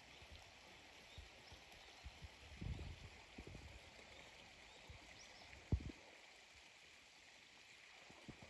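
Near silence: faint outdoor background hiss, broken by a soft low bump about three seconds in and a sharper low knock near six seconds from the handheld camera being moved.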